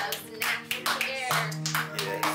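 A small group of women clapping their hands irregularly, with excited voices, over background music.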